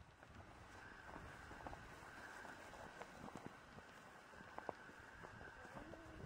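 Faint footsteps through dry grass and brush, with a few soft crunches and snaps among a low rustle.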